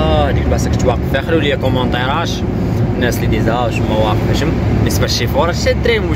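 Heavy lorry heard from inside its cab while driving: a steady low engine and road drone, with a person's voice coming and going over it.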